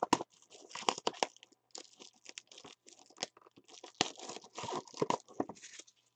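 A trading-card pack being torn open by hand, its wrapper tearing and crinkling in a quick run of crackles.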